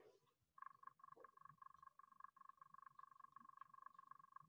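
A faint, steady trilling call at two pitches, starting about half a second in over near silence, typical of a calling animal.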